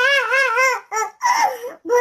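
A high-pitched, childlike voice making a wavering, sing-song cry, its pitch wobbling up and down about four times a second, then two shorter cries after a brief break.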